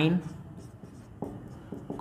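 Marker writing on a whiteboard: a few faint short strokes and taps as letters are written.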